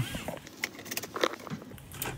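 Car seat belt being pulled across and buckled: a few scattered clicks and rustles.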